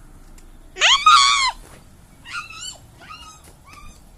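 Dog whining: one loud, long, high-pitched whine about a second in, then three or four shorter, fainter whines.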